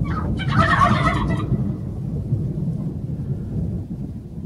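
Wild turkey toms in strut gobbling: a short call right at the start, then one louder gobble lasting about a second from about half a second in. A steady low rumble runs underneath.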